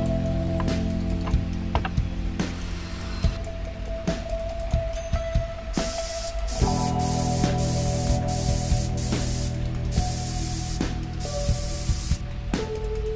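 Aerosol spray-paint can hissing in a string of bursts with short pauses between them, starting about halfway through, as paint is sprayed through a paper stencil onto wood.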